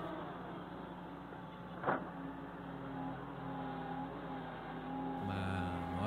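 Diesel engine of a Doosan wheeled excavator running steadily with a faint high whine. There is a single sharp clank about two seconds in, and the engine grows louder near the end.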